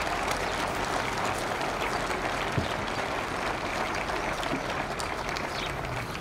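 Steady applause, a dense even clatter of many hands clapping.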